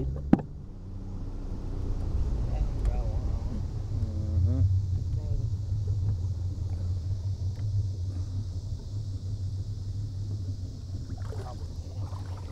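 Boat motor running steadily with a low rumble and hum as the aluminium boat moves along the river. A sharp knock comes just after the start.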